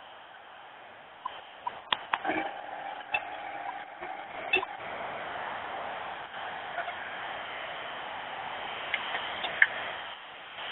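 Field sound of heavy-haul semi trucks moving a superheavy load: a steady rush of truck noise that builds about two seconds in and holds. Scattered sharp clicks and knocks fall in the first few seconds and once near the end. It is heard thin and narrow, through a webinar's low-bandwidth audio.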